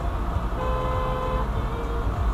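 A vehicle horn sounds once, a steady tone lasting just under a second and starting about half a second in, over the constant low road and engine rumble heard inside a moving car.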